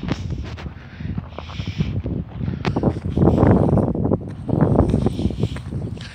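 Wind buffeting a phone's microphone in uneven gusts, loudest in the second half, with footsteps on a dirt and gravel road.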